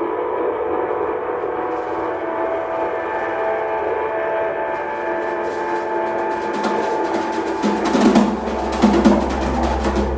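Live music: a layered drone of steady held tones, with drum-kit strokes coming in about halfway through and growing denser and louder. A deep low tone joins near the end.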